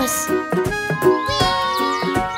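Children's cartoon background music, with short gliding, cat-like pitch sounds over it about halfway through.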